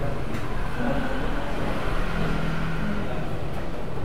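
Steady low background rumble with a held low hum and no breaks, like road traffic outside.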